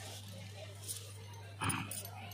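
A pause in a man's speech through a public-address system: the sound system's steady low hum under faint background noise, with one brief voice-like sound near the end.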